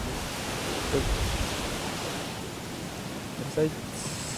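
Steady rushing hiss of wind and gentle surf on a beach, with a low rumble about a second in.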